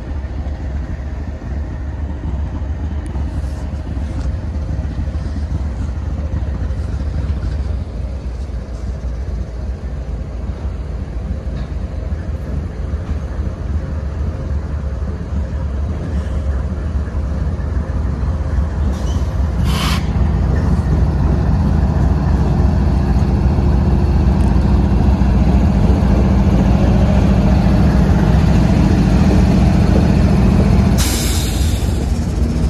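Norfolk Southern diesel freight locomotives approaching and passing close by, their engine rumble growing steadily louder. A short hiss about two-thirds of the way through, after which a deep, steady engine drone takes over.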